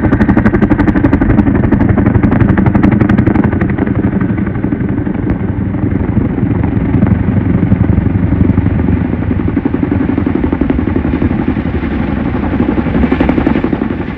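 CH-47 Chinook tandem-rotor helicopter flying overhead: the rapid, even thump of its two rotors over the steady noise of its turbines.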